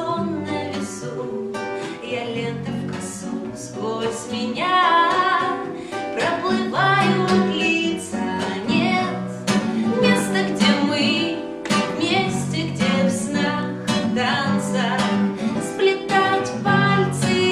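A woman singing a song and accompanying herself on a strummed nylon-string classical guitar.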